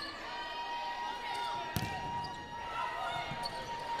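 Volleyball rally in an arena: one sharp ball hit a little under two seconds in, over low crowd noise, with a thin steady tone held through most of it.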